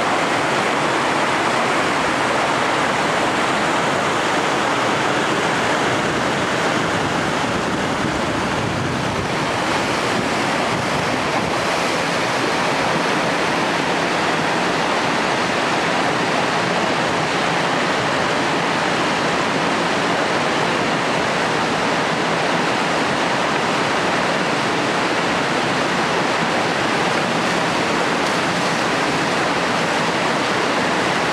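River rapids rushing: whitewater churning over rocks, a loud, steady noise with no change in level.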